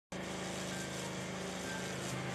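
Pressure washer running steadily: a motor hum under the hiss of its water jet spraying into a galvanized metal garbage container.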